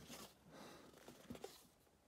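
Near silence, with a few faint rustles and light taps as a cardboard tablet box is handled, one of them a little after a second in.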